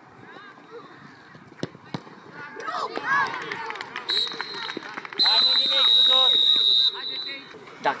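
Youth football match: a sharp kick of the ball, then players and spectators shouting as a goal goes in. About four seconds in comes a long, loud, steady whistle blast lasting about three seconds.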